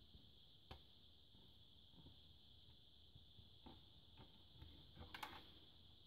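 Near silence: faint room tone with a steady high hiss and a few faint clicks and knocks from the plastic night light being handled and tipped over.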